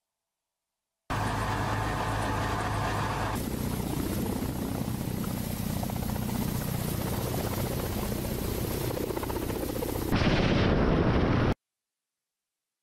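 Military helicopter's rotor and turbine engines running, in spliced clips: the sound starts abruptly about a second in, changes character suddenly a couple of seconds later, and ends with a louder stretch of about a second and a half that cuts off sharply.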